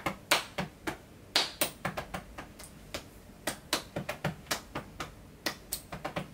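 Hands patting and tapping on a person's body: a string of sharp, irregular taps, roughly three or four a second.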